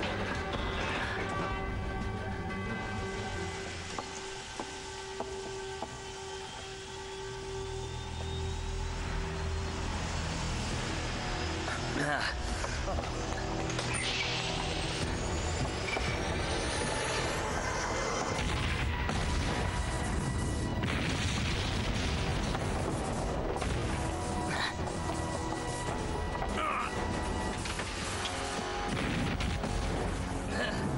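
Film action soundtrack: tense music under a slowly rising electronic whine, then from about eight seconds in a heavier rumble with booms and sharp crashes as machinery bursts into sparks.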